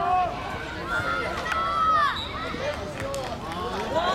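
Several voices shouting and calling over one another in the open air, with no clear words, loudest about two seconds in.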